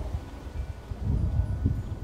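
Outdoor ambience: an uneven, gusting low rumble like wind, swelling about halfway through, with a few faint high chime-like tinkles.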